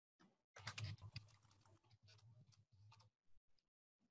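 Faint computer keyboard typing, a patter of quick clicks, picked up over near silence with a low hum underneath while it lasts.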